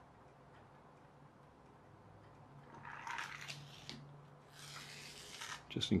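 Faint rubbing and rustling from a hand handling a small plastic solar toy car on a board, in two short stretches in the second half.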